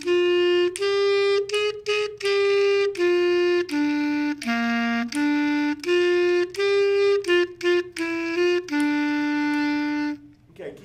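A clarinet playing a simple exercise melody as a string of separate notes that step up and down, with a few quick short notes, ending on a long held note.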